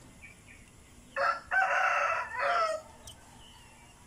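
A rooster crowing once, starting about a second in and lasting about a second and a half, in three parts with a long held middle.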